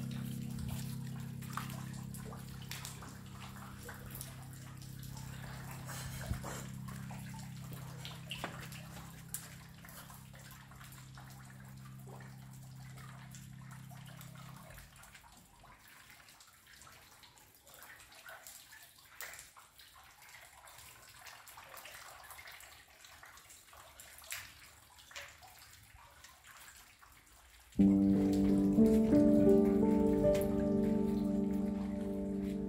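Calm music with a rain sound: a held low chord fades out about halfway, leaving faint scattered raindrops and drips, then the music comes back in suddenly and loudly near the end.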